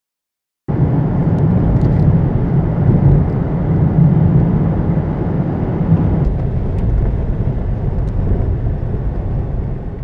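Car driving through an unfinished road tunnel: steady engine and road noise with a low rumble, starting abruptly just under a second in.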